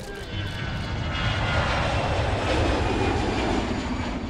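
Jet airliner flyby: a rushing engine roar with a faint high whine that swells about a second in, stays loud, then eases slightly near the end.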